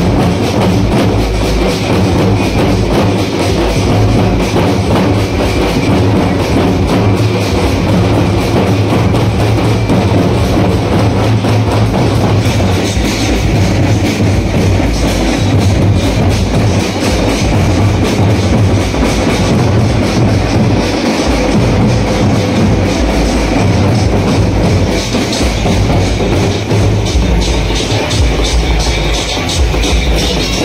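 Loud procession music driven by fast, continuous drumming, with no let-up.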